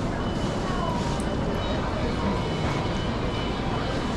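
Steady ambience of vehicle traffic, a continuous low rumble, with faint voices of people.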